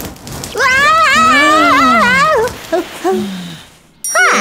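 A cartoon character's wordless, high wavering whine, rising and falling in pitch for about two seconds, followed by a few short vocal blips.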